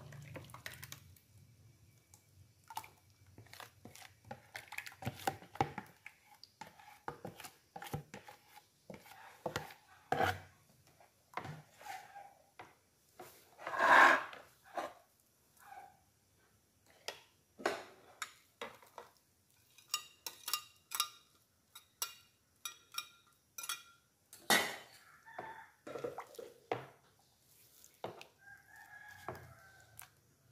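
Metal ladle stirring thick batter in a plastic basin, with irregular clicks and knocks against the bowl as the batter is poured in and sliced bananas are added. A louder brief sound comes about fourteen seconds in, and a run of short high chirping calls around twenty seconds in.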